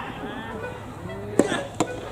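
Two sharp knocks of a soft-tennis rally, about a second and a half in and just before the end, the first louder: racket and soft rubber ball in play on the hard court.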